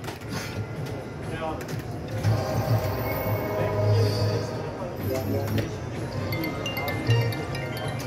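Electronic jingles and chiming tones from an EGT Bell Link video slot machine as its reels spin and stop, over a background of casino-floor voices.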